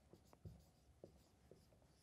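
Faint squeaks and taps of a marker writing on a whiteboard, a few short strokes in the first second and a half.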